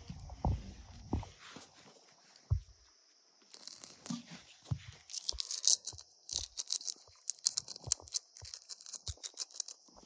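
Faint scattered crackling and light taps of eating by hand: a fresh green chilli being broken and handled, and rice being handled on a steel plate. A few soft thumps come first, then denser crackling from about a third of the way in.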